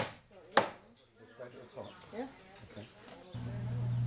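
Hammer driving nails into timber wall framing: two sharp blows about half a second apart at the start, then faint voices.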